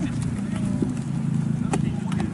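A football thrown back and caught, the catch a single sharp slap near the end, with a couple of lighter knocks before it. Under these runs a steady low outdoor rumble.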